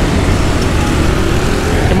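Busy road traffic passing close by: motor scooters and cars going past in a steady, loud wash of engine and tyre noise.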